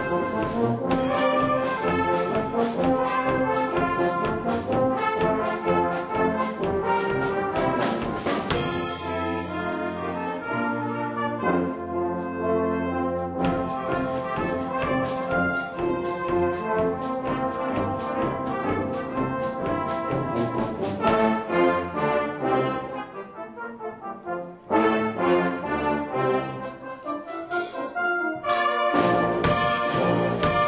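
A brass band of cornets, flugelhorn, tenor horns, baritones, euphoniums, trombones and basses, with drum kit, plays a lively medley arrangement with drums keeping the beat. About three-quarters of the way through the playing thins out and drops in volume, then the full band comes back in loudly.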